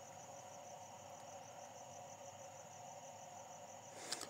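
Near silence: faint steady background noise with a faint, high, evenly pulsing trill of crickets.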